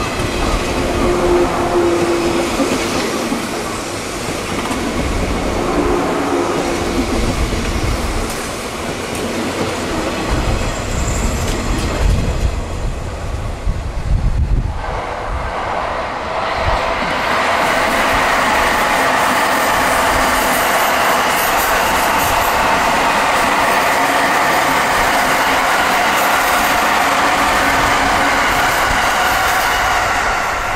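Electric train running on the rails: wheel and track rumble with clickety-clack. About halfway in, the rumble gives way to a steadier, level running noise that holds to the end.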